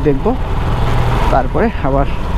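Motorcycle engine running at low road speed, a steady low rumble under passing speech.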